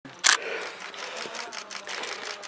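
A sharp burst of noise just after the sound cuts in, then a run of camera shutter clicks over faint voices of people standing around.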